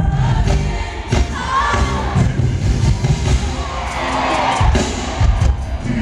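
Live R&B band playing, with a strong bass line, while the audience cheers and sings along over it.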